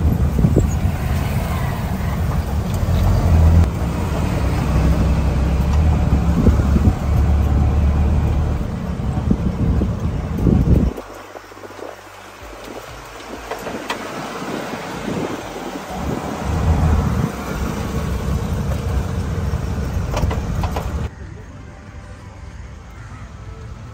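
Auto-rickshaw (tuk-tuk) ride: engine and road noise with a heavy low rumble, cutting off abruptly about eleven seconds in to quieter open-air ambience, where a shorter low rumble returns for a few seconds near the end.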